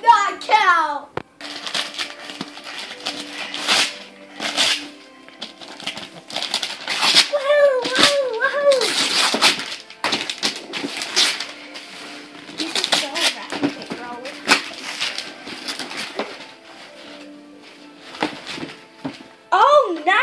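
Wrapping paper being torn off a gift box in a long run of quick, irregular rips and crinkles.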